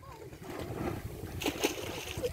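Wind rumbling on the microphone over water lapping around a metal jetty, with a few sharp slaps of bare feet running on the wet deck around the middle.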